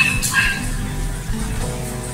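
A small loudspeaker playing a 20 Hz sine test tone from a signal generator app through a small amplifier: a steady low hum with a row of overtones above it. At 20 Hz the driver puts out very little, and the cone barely moves. A short click comes right at the start.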